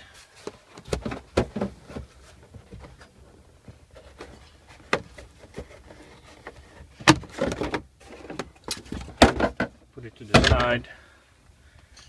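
A car's plastic ventilation hose and trim pieces being handled and slid out of the cargo floor: irregular clicks, knocks and rubbing of plastic, with louder knocks and scrapes in the second half.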